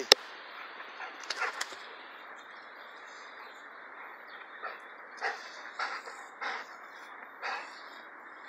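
A Cane Corso–Pit Bull mix dog breathing hard in short huffs as it comes back carrying a stick, the huffs repeating a little under two a second in the second half, over a steady faint outdoor hiss. A single sharp click right at the start.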